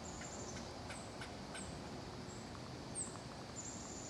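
Faint woodland ambience: short, high-pitched chirping calls repeat throughout, with a few light sharp clicks in the first two seconds.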